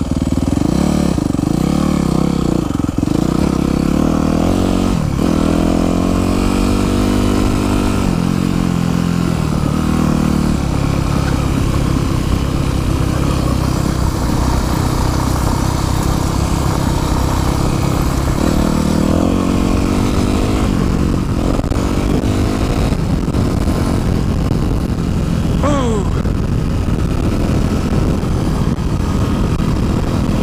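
Yamaha YZ250F four-stroke single-cylinder dirt bike engine under way, picked up by a helmet-mounted microphone, its pitch climbing several times as the rider accelerates and shifts. Wind noise on the microphone runs over it.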